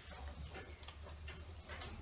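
Sheets of paper being handled on a table close to the microphones: a few soft, irregular rustles and light taps over a steady low room hum.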